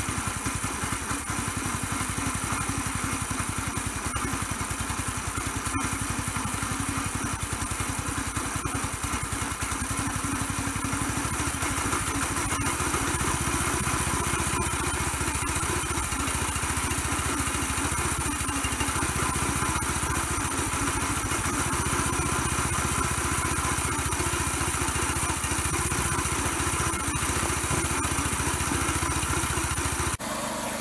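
Small gasoline engine running steadily, driving the homemade ski tow rope through its geared-down chain drive. It gets a little louder from about twelve seconds in.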